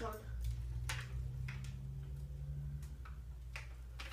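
A few light clicks and taps from grocery items being handled, over a steady low hum.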